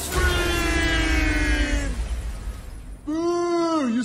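A singer's long held note in a pop song with backing music, sinking slightly in pitch and fading out about two seconds in. Near the end comes a short, loud voice whose pitch bends up and then down.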